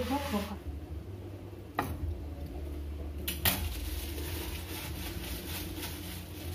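Kitchen utensils clattering against dishes: two sharp clinks, about a second and a half apart, over a steady low hum.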